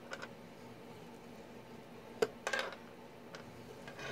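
Scoring stylus on cardstock over a plastic scoring board: a few faint, light clicks and a short scrape as the tip is set down and drawn along a score line. The sharpest click comes a little past halfway.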